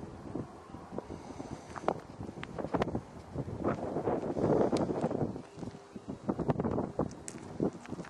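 Wind buffeting the microphone in uneven gusts, strongest about halfway through, with scattered short clicks and knocks.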